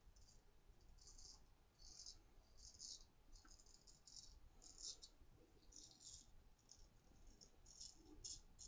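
Faint, short scratchy strokes of a 6/8 round-point straight razor cutting through lathered stubble, about a dozen in a row at roughly one or two a second.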